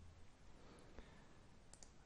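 Near silence with faint computer mouse clicks: one about a second in and two close together near the end.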